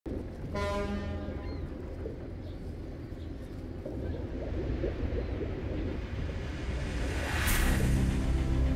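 Intro sound design: a low rumbling sea ambience, with a short horn-like blast about half a second in and a swelling whoosh near the end.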